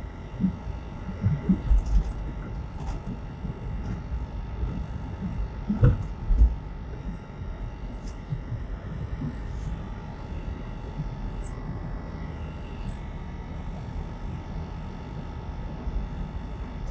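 Car interior noise while driving: a steady low road and engine rumble with a faint constant hum. A few low thumps, the loudest about six seconds in.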